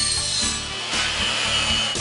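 Electric compound miter saw cutting a strip: the blade's high whine with cutting noise, the whine dropping in pitch about a second in.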